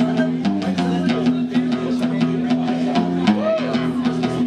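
Live guitar music: a guitarist strumming an acoustic guitar steadily through the bar's PA, heard across the room.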